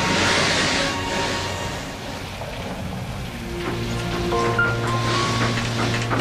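Dramatic background music of long held notes over a hissing noise that swells in the first second and again near the end.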